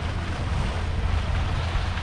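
Wind buffeting the microphone as a steady, uneven low rumble, over the wash of the sea against the rocks of a breakwater.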